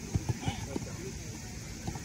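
Footballs being kicked and passed on artificial turf: a handful of irregular dull thuds, with players' voices faint in the background.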